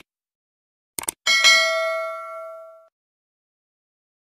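Sound effects for a subscribe-button animation: a quick double mouse click about a second in, then a bright bell ding that rings out and fades over about a second and a half.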